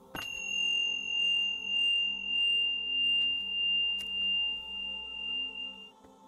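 A single sustained high ringing tone starts suddenly, holds one pitch with a regular swell and fade in loudness, and cuts off near the end. Soft ambient background music plays under it.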